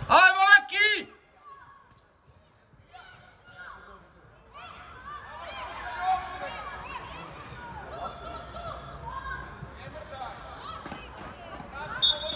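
Voices shouting across a football pitch. A loud, high-pitched shout comes in the first second, then after a brief near-silent gap many more distant voices call out over one another.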